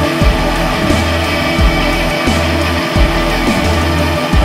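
Loud instrumental music with a heavy bass line and a strong beat about every one and a half seconds.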